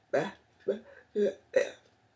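A woman's voice making four short, unclear syllables in quick succession, one of them heard as "yeah".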